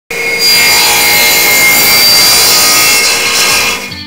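Power tool cutting wood: a loud, steady rasping noise with a few faint whining tones through it, fading out just before the end.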